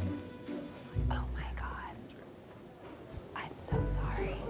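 Hushed, quiet talking between two people over background music with a low bass line.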